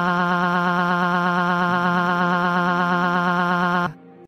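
A single long, held 'aaaa' wail from a synthesized animation voice, crying, at one steady pitch with a regular wobble. It cuts off just before the end.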